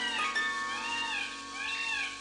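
Repeated meow-like animal calls, three in quick succession, each rising then falling in pitch, over held notes of plucked-string music.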